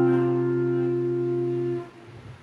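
A chord strummed on an acoustic guitar and left ringing with a steady pitch, fading slowly, then damped short near the end.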